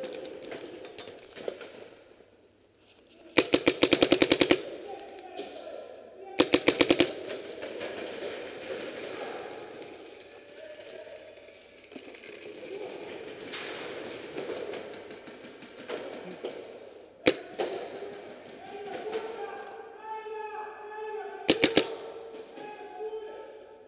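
Paintball marker fire: two rapid bursts of shots a few seconds in, a single shot later on, and another short burst near the end.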